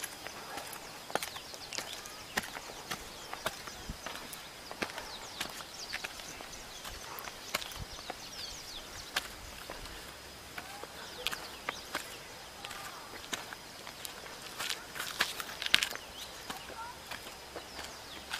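Footsteps scuffing and tapping irregularly on bare granite as people walk uphill over rock, under a faint steady high-pitched tone.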